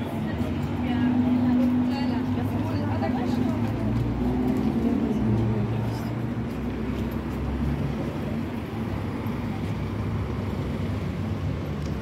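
City street traffic with the indistinct talk of passers-by. A passing vehicle's low engine rumble swells about four seconds in and fades again by about eight seconds.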